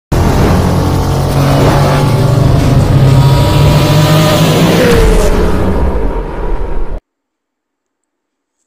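Car engine sound effect in an animated intro, loud and steady with a deep low hum, a falling tone about five seconds in, cutting off suddenly at about seven seconds.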